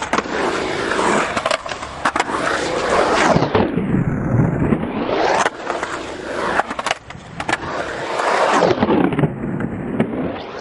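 Skateboard wheels rolling hard on concrete, the rolling noise dipping in pitch and rising back twice, with several sharp clacks of the board and trucks striking the concrete.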